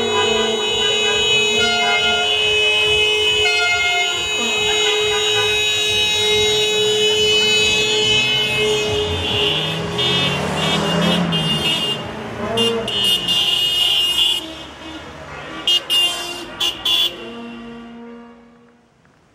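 Many car horns honking at once in a celebratory car parade, a dense overlapping blare of held horn notes. About ten seconds in a car passes close by, and after that the horns turn into short separate toots.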